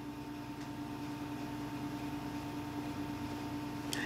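Low steady room hum with a few faint steady tones, and one brief click just before the end.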